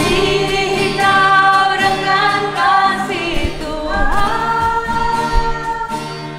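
Several women singing a worship song together to acoustic guitar, holding long notes.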